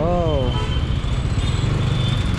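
Steady low rumble of a motorbike engine running at low speed in slow traffic, with road noise around it, after a brief spoken 'oh' at the start.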